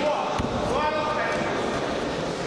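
Raised, shouting voices carrying in a large hall, with one dull thump about half a second in, during a grappling exchange on the mat.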